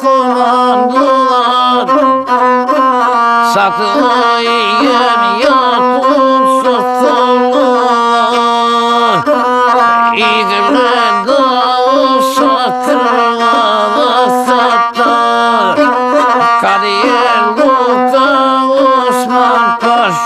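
Gusle, a one-string bowed folk fiddle, played continuously with a horsehair bow while a man sings an epic song along with it. A steady low note holds under a melody that keeps bending and shifting.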